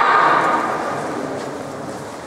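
A long, drawn-out shout that fades out about half a second in, followed by a quieter background murmur.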